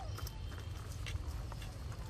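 Outdoor tree-canopy ambience: scattered light clicks and snaps over a steady low rumble, with a short falling whistle-like call right at the start.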